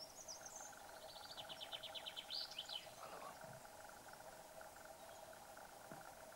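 A small songbird singing faintly: a quick run of repeated high notes, then a few short glides, in the first three seconds, over a steady faint background hum.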